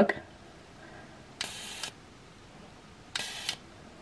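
Rechargeable electric arc candle lighter with a long flexible neck firing twice, each time a harsh, horrible buzz lasting about half a second, the first about a second and a half in and the second about three seconds in.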